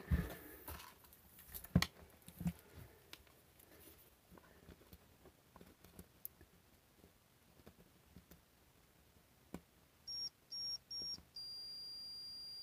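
Digital multimeter's continuity beeper: three short high beeps near the end, then a steady beep as the probes bridge a connection on the circuit board, signalling continuity between the probed points. Before that, a few faint clicks of the probe tips touching the board.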